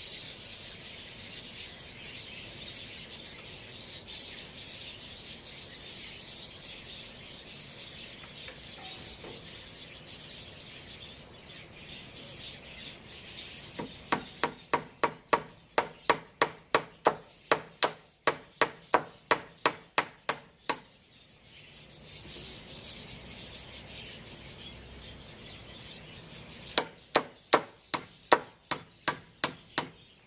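A steady scraping rasp for the first dozen seconds, then a hammer nailing wooden stair formwork boards: a quick run of about twenty blows over some seven seconds, and a second run of about ten blows near the end.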